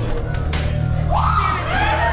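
Eerie haunted-maze soundtrack: a steady low drone, with a high wailing voice that swoops up and then falls from about halfway through.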